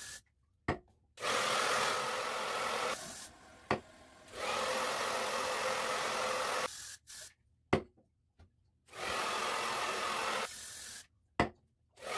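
Aerosol hairspray and a blow dryer on a cool, low setting, setting a mohawk section upright. The hiss comes in three bursts of about two seconds each, cut off abruptly, with a few sharp clicks in the gaps.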